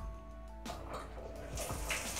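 Faint music with a few sustained tones. About one and a half seconds in, a steady hiss of water spraying from a shower head begins. The shower head has just been descaled in muriatic acid, so its holes are unblocked.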